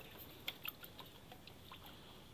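Faint small wet clicks and splashes of a hand tool working mud under the water in a lotus basin, a few quick ticks clustered about half a second to a second in.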